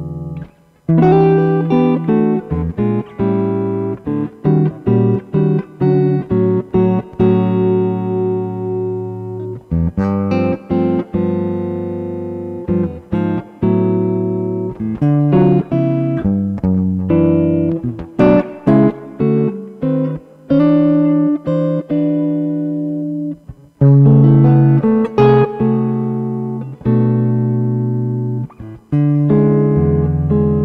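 Laurie Williams Riverwood electric guitar played clean through an amplifier: a run of chords, each struck and left to ring, one or two strokes a second, with a few brief breaks.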